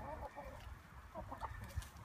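Chickens clucking faintly: a few short calls just after the start and again around a second and a half in.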